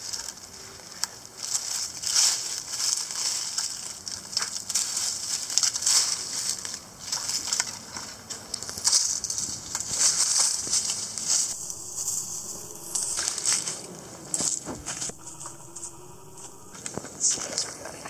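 Weeds and dry leaf litter crackling and rustling in irregular bursts as weeds are pulled from mulched ground and pressed down into a plastic five-gallon bucket.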